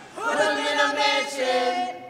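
A group of young people chanting a team chant together in sung, held notes, several voices at once; it starts just after the beginning and breaks off near the end.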